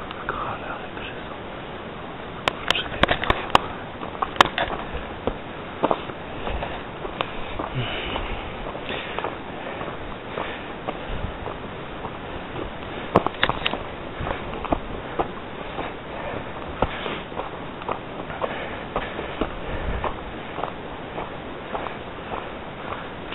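Footsteps and handling knocks from a handheld camera on a stony mountain trail, over a steady hiss, with clusters of sharp clicks about three seconds in and again near the middle.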